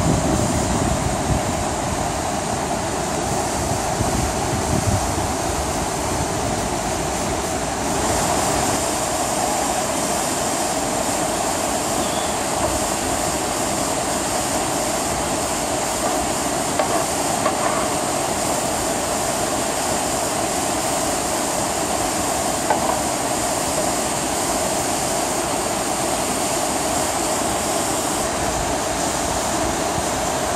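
Steady rush of white water pouring down a rocky river cascade.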